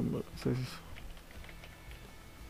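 Computer keyboard being typed on: a run of faint key clicks as a line of text is entered, with a short spoken sound in the first half second.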